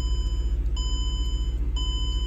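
Car warning chime in a 2007 Mercedes-Benz E550 beeping repeatedly, about once a second, each beep a steady high tone lasting most of a second, over a low steady rumble.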